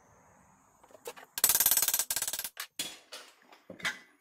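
A hammer rapidly striking sheet tin, heard as a loud, dense rattle of blows lasting about a second, followed by a few separate knocks near the end.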